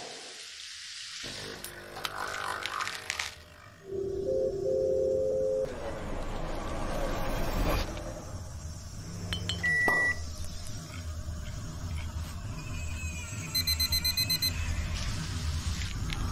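A string of everyday sound effects over background music: a noisy hiss in the first seconds, a pair of steady electronic tones, a short high beep, a low steady rumble through the second half, and a rapid run of beeps near the end.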